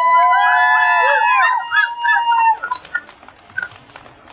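Several high-pitched voices calling out at once in long held, sliding notes, overlapping each other and dying away after about two and a half seconds.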